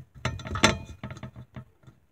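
Handling noise at the recording device: a string of irregular clicks, knocks and rattles close to the microphone, the loudest about two-thirds of a second in.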